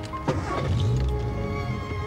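Car engine started with the key: a click about a quarter second in, then the engine turning over and catching into a low running note. Background music with held notes plays throughout.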